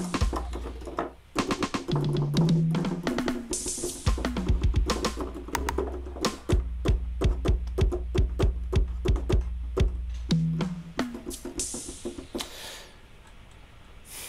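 Programmed electronic drum pattern played back from music software, a fast run of drum hits over a deep sustained bass line. Two brighter cymbal-like swells come about three seconds in and again near the end, and the playback drops quieter just before the end.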